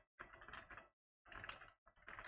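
Computer keyboard keys clicking faintly in two short bursts of typing.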